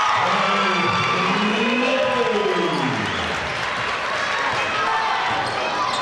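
Basketball game in a gymnasium: basketballs bouncing on the hardwood floor and sneakers moving over a steady murmur of crowd chatter. In the first half a long drawn-out call rises and then falls in pitch.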